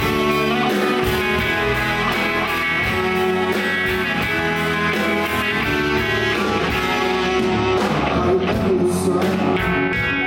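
Live rock band playing an instrumental passage, with electric guitars over drums and keyboard.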